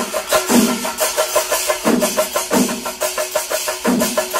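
Kerala temple percussion orchestra (chenda melam): chenda drums beaten in a fast, dense stream with hand cymbals ringing over them, and a heavier accent recurring about every two-thirds of a second.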